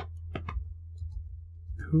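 A few short, sharp clicks in a small room: one at the start and two or three close together about half a second in. A steady low electrical hum runs underneath, and a man starts speaking near the end.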